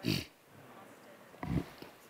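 Two short vocal sounds into a microphone, the first right at the start and the second about a second and a half later, during a mic check.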